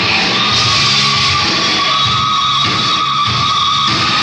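Heavy metal band playing live: a long, steady high note is held over the bass and drums, on a raw bootleg tape.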